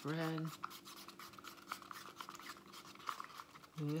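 A wooden stir stick scraping and tapping around a paper cup as acrylic paint is mixed, with quick, irregular small scrapes.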